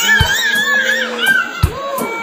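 A toddler's high-pitched, wavering squeal lasting about a second, followed by a couple of short knocks.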